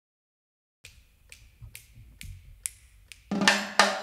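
Count-in of six sharp clicks, about two a second, then the band comes in with drums and pitched instruments near the end.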